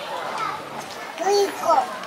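Young children's voices, talking and calling out, with two loud high-pitched calls in the second half.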